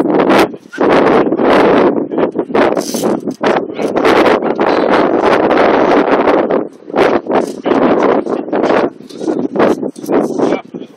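Wind buffeting the phone's microphone in loud, uneven gusts that briefly drop away a few times.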